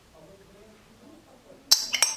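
A metal spoon clinks sharply against a glass mixing bowl near the end, with a short bright ring, as yogurt is scraped from its pot. Before it, only faint soft handling sounds.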